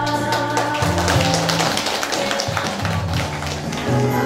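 Instrumental stretch of a song's backing music played over loudspeakers: steady bass notes under a quick, rattling percussion beat, with no voice singing.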